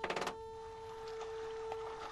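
A steady electronic-sounding tone that holds unbroken, with a brief, louder, sharp sound right at the start.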